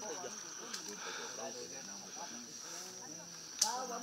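Faint, quiet voices talking in the background over a steady high-pitched drone of forest insects, with one short sharp click a little before the end.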